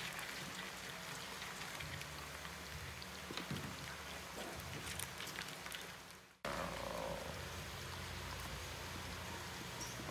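Faint clicking and scraping of live crabs' shells and legs against a plastic basin as they are handled, with a few soft knocks over a steady low background hum. The sound fades into a brief dropout a little after six seconds and then resumes abruptly.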